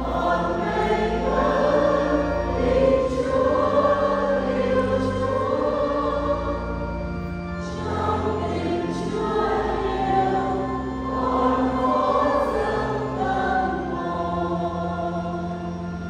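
A choir singing a slow hymn over long held low accompanying notes.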